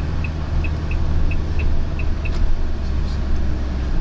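Diesel cargo van heard from inside the cab while driving slowly in city traffic: a steady low engine drone with road noise. A light regular ticking, roughly in pairs, runs along with it and stops a little past two seconds in.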